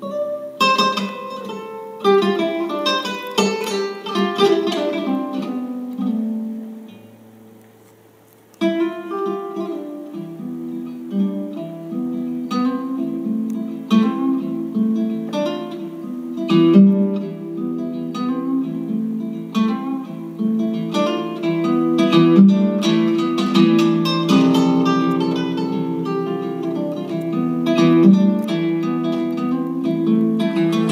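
Solo classical guitar fingerpicking a kora song transcribed for guitar. It opens with runs of plucked notes falling in pitch that die away almost to silence, then about nine seconds in it starts a steady rolling repeated pattern over a bass line, the way a kora's ostinato is played.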